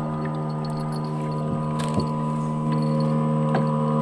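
Small petrol engine of a wooden river boat running at a steady speed with the boat under way, a constant drone that gets a little louder about two-thirds of the way in.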